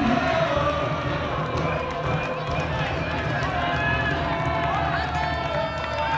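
A crowd of many voices shouting and calling out at once, cheering a home run, over a steady low rumble.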